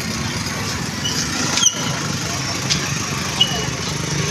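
Scooter engine running close by amid street noise and voices, with a brief sharp sound about one and a half seconds in.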